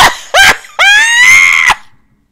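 A woman's loud, high-pitched excited shriek: a short rising whoop, then a longer cry that rises and holds for about a second before cutting off.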